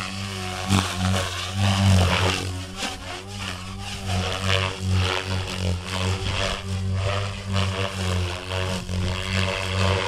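Goblin RAW 500 electric RC helicopter flying 3D aerobatics: the main rotor blades whoosh and chop and the electric motor whines, the pitch and loudness surging and dropping with each manoeuvre.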